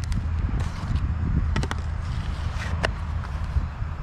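Handling noise from a plastic graphing calculator being turned over in the hands: a quick run of light clicks about a second and a half in and one more click near the three-second mark, over a steady low rumble.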